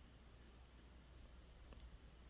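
Near silence: a low steady hum with faint pencil scratching on paper and a soft tick near the end.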